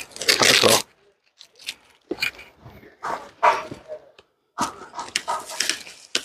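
Packing tape being ripped off a cardboard box in a series of short tearing pulls, the loudest in the first second, with the cardboard flaps scraping and rustling between them.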